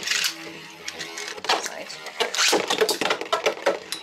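Beyblade spinning tops (Thief Phoenix and Hell Beelzebub) whirring in a plastic Beyblade stadium, a second top coming in to join the first, with repeated sharp clacks as the tops strike each other and the stadium walls.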